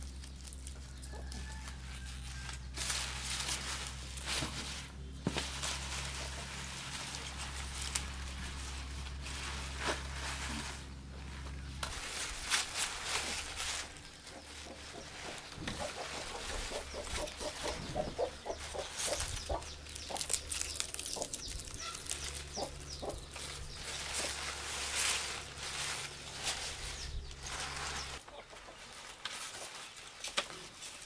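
Chickens clucking, over the rustle of leafy mustard greens being handled and bundled on a bamboo table. A low steady hum runs underneath and stops near the end.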